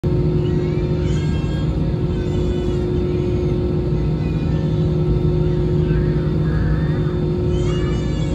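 Steady drone of an Airbus A320-216's cabin, heard from a window seat over the wing while the aircraft is on the ground before takeoff: a low rumble with a steady hum from its CFM56 engines at low power. A higher, wavering cry-like voice rises and falls over it several times.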